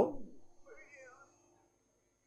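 A man's voice trailing off at the start, then a faint, short pitched sound with rising and falling tones about half a second later, its source unclear.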